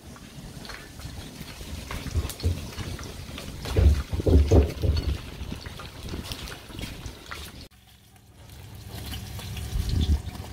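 Cooking sounds: a metal ladle stirring goat curry in a large pot on a gas burner, with a liquid, sizzling hiss and a few low thumps. After a short break about eight seconds in, hot oil sizzles in a large iron pot over a wood fire.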